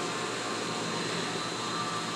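Steady mechanical hum and hiss of a store's aquarium aisle, the running filtration and ventilation of the fish-tank racks, unchanging throughout.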